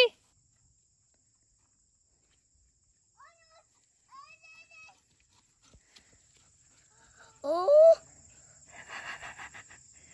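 Mostly quiet outdoor air with a few faint distant calls, then one loud short rising voice call about seven and a half seconds in, followed by a brief scuffling rustle near the end.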